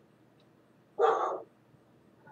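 A dog barking once, a single short loud bark about a second in.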